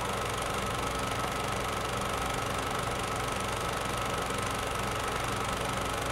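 Steady mechanical running noise with a low hum, a fine rapid flutter and a faint thin high tone: an old film projector running.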